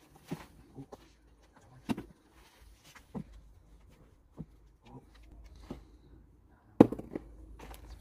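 A fabric grow bag of potato soil and straw being tipped and shaken out into a plastic tub: rustling and irregular soft knocks, the loudest knock near the end.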